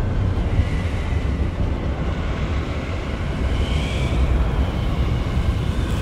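Sound-design rumble for a swirling-energy visual effect: a loud, steady deep rumble with a hiss over it, and a faint high whine rising briefly about three and a half seconds in.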